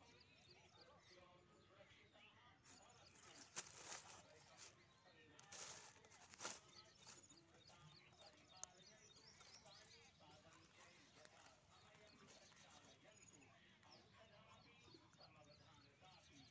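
Near silence, with a few brief crackles about four and six seconds in and a single click later: dry corn husks rustling as a kitten moves among them.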